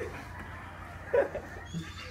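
A young man's short strained cry about a second in, a pained reaction to the burning heat of a superhot pepper lollipop in his mouth.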